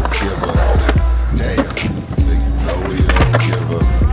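A hip hop beat with a deep, heavy bass. Beneath it, skateboard wheels roll on a concrete bowl.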